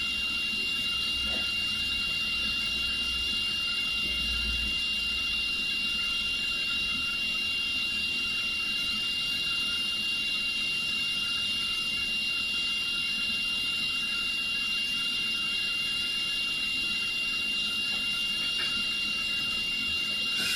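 Steady background hiss with a thin, constant high-pitched whine running under it, unchanging in level; no other sound stands out.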